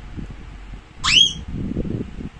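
A young child's short, high-pitched squeal that rises steeply in pitch about a second in, with low rustling and knocks from handling the picture book around it.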